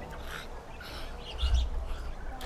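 Birds chirping in short scattered calls over a quiet garden background, with a brief low rumble about one and a half seconds in.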